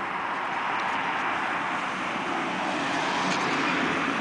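Steady street noise from a vehicle on the road: an even rush that swells slightly toward the end.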